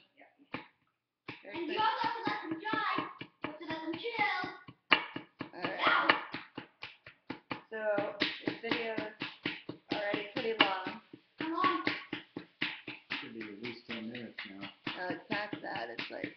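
Rapid, irregular tapping of a small excavation-kit hammer and chisel chipping at a plaster dig block, with voices mixed in.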